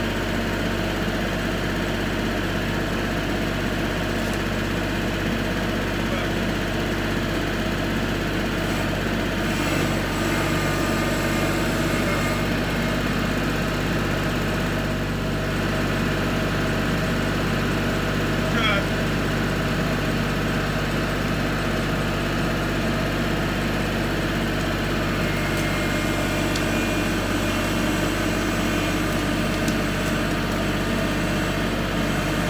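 Kubota L3301 tractor's three-cylinder diesel engine idling steadily.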